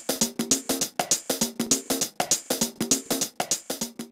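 Electronic drum-machine loop with short pitched synth notes, played through the TimeShaper module of ShaperBox 2 so that every second sixteenth note is delayed, giving the beat a swing or shuffle feel. The hits are sharp and come quickly and evenly, several each second.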